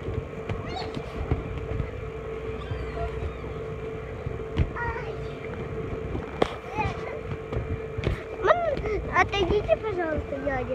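Steady hum and low rumble of an inflatable slide's electric air blower, holding one fixed pitch. A few sharp knocks come a little before and after the middle, and high children's voices rise near the end.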